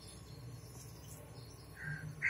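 Faint background noise between narration: a steady low hum and hiss with a few faint high-pitched chirps.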